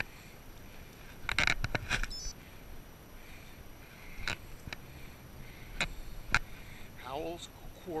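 Salsa Bucksaw full-suspension fat bike rolling slowly over grass to a stop. A cluster of rattles and knocks comes about a second and a half in, followed by a few single clicks spaced out over the next few seconds.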